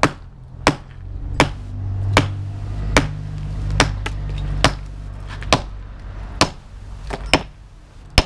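A club hammer repeatedly striking a galvanised steel scaffold tube embedded in a concrete-cored brick pillar, about ten ringing metallic blows a little over a second apart, meant to send shock waves down the pipe to crack the concrete around it. A low steady hum runs underneath.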